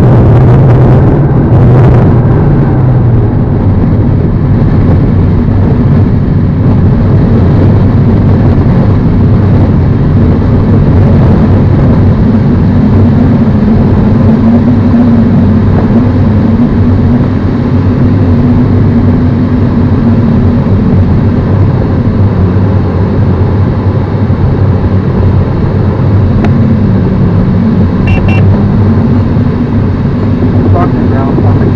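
Loud, steady drone inside a glider cockpit during an aerotow launch: the tow plane's engine and propeller ahead, with the rush of air past the canopy. The engine pitch wavers slightly, and there is a rougher rush in the first couple of seconds while the glider is still rolling on the grass.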